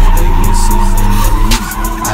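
Drift cars' tyres squealing as they slide sideways, with a music beat underneath.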